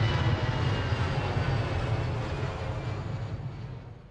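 Jet airliner climbing after takeoff, its engines a steady deep rumble that fades away toward the end.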